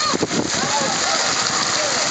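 Steady hiss of water pouring from spray features and splashing into the pool, with scattered voices and shouts of many people over it.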